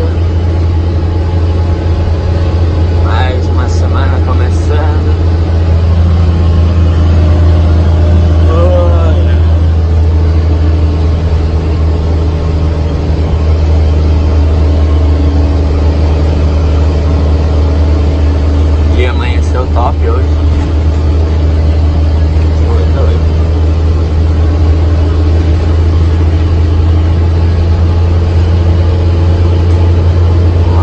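Truck engine and road noise heard from inside the cab while cruising at highway speed: a loud, steady low drone.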